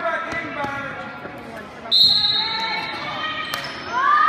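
A referee's whistle gives one sharp, steady high blast of just under a second, about two seconds in, over voices echoing in a gym hall. A basketball bounces on the hardwood court.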